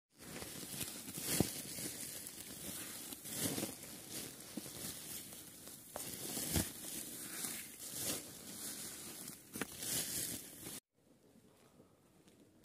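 Dry chopped hay rustling and crackling against a sack and a plastic bowl as it is handled, with a few sharp knocks along the way. The sound cuts off suddenly about a second before the end, leaving only quiet room sound.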